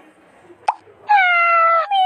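A short pop, then a recorded domestic cat meowing: one long meow starting about a second in and falling slightly in pitch, with a second meow beginning at the very end.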